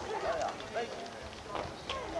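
A group of people chattering at once, with many overlapping, fairly high voices and no single clear speaker. A few sharp clicks sound through it, the clearest near the end.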